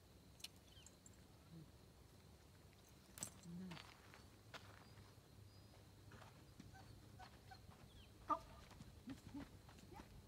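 Near silence: quiet outdoor background broken by a few brief faint sounds. There is a short pitched call about three seconds in, a sharper one at about eight seconds, and a couple of short voice-like sounds just after.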